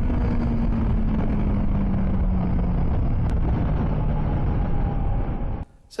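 CFMOTO 650 MT parallel-twin motorcycle engine running at road speed under heavy wind rush. The engine note falls slowly as the revs drop after the 0-60 mph run. The sound cuts off suddenly near the end.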